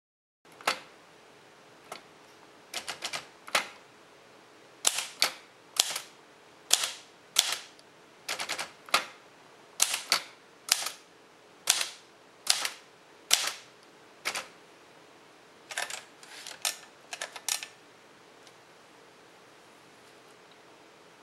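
Manual typewriter typing: the typebars strike the paper as sharp, separate clacks in an irregular rhythm, some in quick runs and some with pauses between. The typing stops about 18 seconds in.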